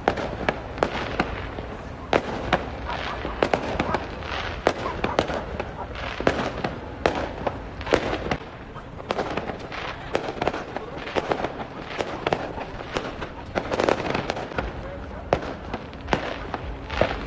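Fireworks and firecrackers going off in a dense, irregular string of sharp bangs and cracks, several a second, with no let-up.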